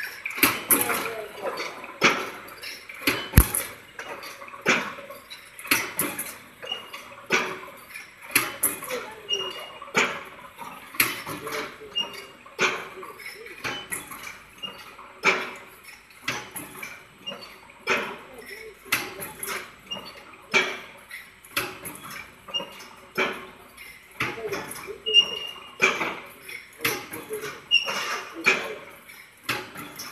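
Automatic welded wire mesh machine running, its welding head and mesh feed cycling with a sharp clank about every 1.25 seconds.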